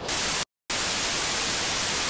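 TV static sound effect: an even hiss of white noise that starts sharply, cuts out completely for a split second about half a second in, then comes back steadily.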